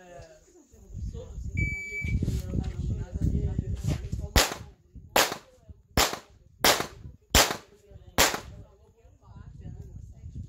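A handheld electronic shot timer gives a short high start beep, and a few seconds later a pistol fires six shots at a steady pace, a little under a second apart.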